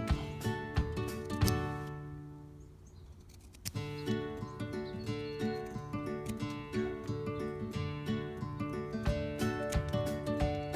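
Background instrumental music of short, ringing notes. It fades away about two seconds in and starts up again just before four seconds in.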